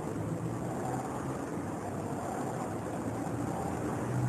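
Steady background noise: a low hum with an even hiss over it, and no distinct sounds standing out.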